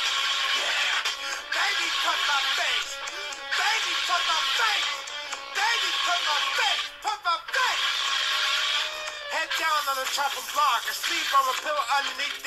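A man singing a punk rock song in a recording played back, with a thin, tinny sound that has no bass.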